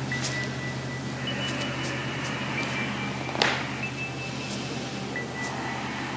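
Quiet room tone: a steady low hum with faint, thin high tones that change pitch every second or two, and one soft click about halfway through.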